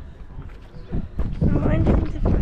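Footsteps on dirt ground, with low wind rumble on the microphone, growing louder about a second in.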